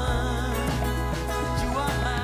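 Background music: a song with singing over a steady bass line.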